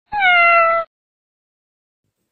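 A kitten meowing once, a short high call that falls slightly in pitch.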